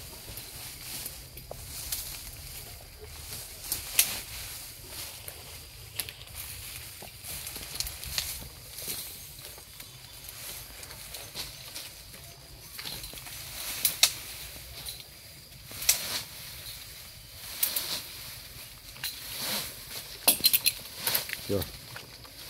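Quiet outdoor ambience with a faint steady hiss and scattered sharp clicks and taps, a few of them louder than the rest.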